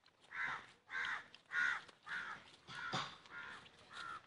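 A run of about six harsh animal calls, evenly spaced at roughly two a second.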